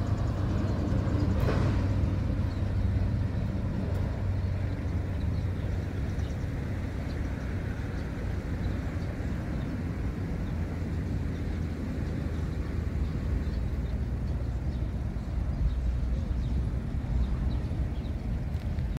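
Steady low rumble of outdoor field ambience, with a fainter hiss above it.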